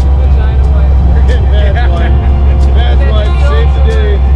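Men talking over a loud, steady low rumble.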